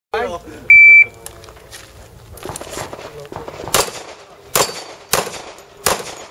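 Electronic shot timer giving its start beep, a single steady high tone lasting about a third of a second, under a second in. About three seconds later a handgun fires four shots, spaced roughly half a second to under a second apart.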